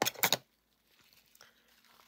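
A brief burst of crinkling as a piece of paper kitchen towel is scrunched up by hand, then faint handling noise.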